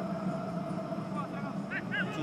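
Football stadium ambience during play: a steady low hum of background noise, with a brief high-pitched shout near the end.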